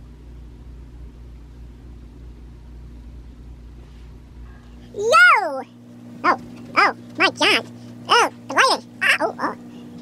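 Steady low background hum, then about five seconds in a man's voice gives a loud, high whoop that rises and falls, followed by a quick run of short exclaimed syllables.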